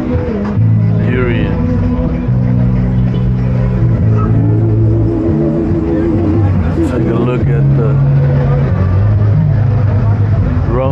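Loud music with a deep bass line moving from note to note, and a wavering held note in the middle, over a murmur of people's voices.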